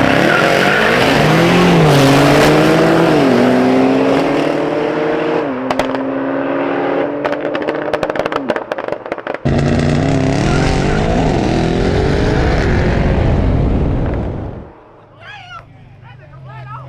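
Mercedes-AMG E63 S and BMW launching in a street race, their engines revving hard with the pitch climbing and dropping back at each upshift, then crackling. A sudden cut about halfway brings a second run of rising engine revs that fades away shortly before the end, when voices come in.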